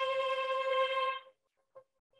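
Lambdoma harmonic keyboard sounding a steady pure tone at 528 Hz, which cuts off abruptly a little over a second in. A faint short blip at the same pitch follows near the end.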